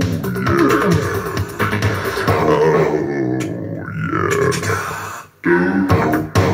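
A song playing loud through a homemade Bluetooth boombox with two 8-inch Rockville marine speakers driven by a 320 W amp. The music drops out briefly about five seconds in, then comes back with a sharp beat.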